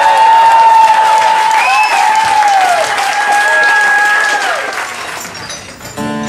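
Small audience applauding after a song, with whistles and cheers over the clapping; the applause fades out near the end.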